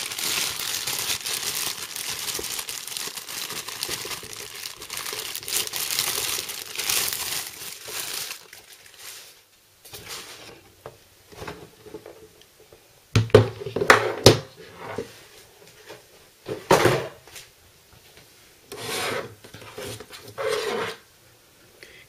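Plastic packaging bag crinkling and rustling for about eight seconds as the liquid cooler is pulled out and unwrapped, then scattered knocks and rustles as the black radiator unit is handled, with the loudest bumps around the middle.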